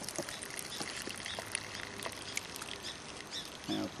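Light patter of small ticks and taps as hands scoop wet briquette mix (shredded paper, sawdust and rotted yard clippings) from a plastic bucket.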